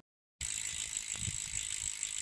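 Bicycle rear freehub ratchet clicking very rapidly in a steady buzz. It cuts in suddenly about half a second in.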